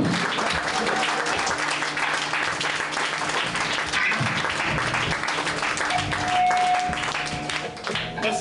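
Club audience applauding at the end of a song, a dense spread of clapping, with a steady low hum under it and a thin held tone from about six seconds in.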